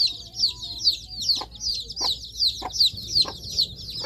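Birds chirping rapidly and without pause: a dense run of short, high, falling chirps, several a second. Short soft knocks come about every half second in the second half.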